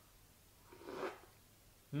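A man sipping beer from a glass: one short, soft breathy sip about a second in, otherwise near silence.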